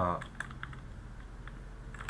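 Typing on a computer keyboard: a handful of separate key clicks, most of them in the first second.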